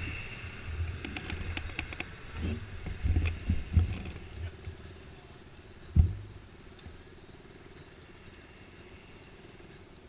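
Small dirt-bike engines running at idle in the background, under irregular low rumbles of wind and handling on the camera microphone. There is a sharp knock on the microphone about six seconds in, and after it only a faint, steady engine hum.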